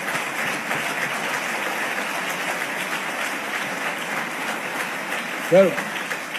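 Large audience applauding steadily, a sustained even wash of clapping; a man's voice comes back in near the end.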